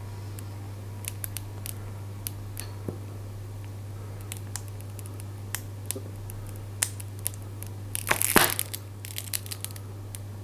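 Plastic squeezy bottle of golden syrup being squeezed, the plastic giving small scattered clicks and crackles. About eight seconds in comes a louder, half-second rush of noise from the bottle.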